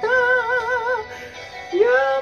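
A man singing enka over a karaoke backing track, imitating a female enka singer's voice. He holds a long note with a wavering vibrato that ends about a second in, then scoops up into another held note near the end.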